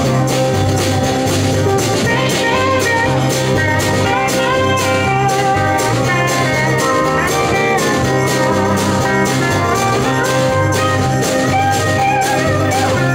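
A live band plays an instrumental passage with no singing: strummed acoustic guitar and keyboard over bass and a steady drum beat, with a lead line sliding up and down in pitch above them.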